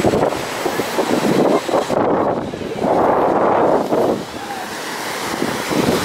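Wind buffeting the camera microphone, a rough rushing noise that surges and eases in uneven gusts, strongest about three seconds in.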